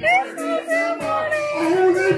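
A voice singing a melody into a handheld microphone over backing music, karaoke-style.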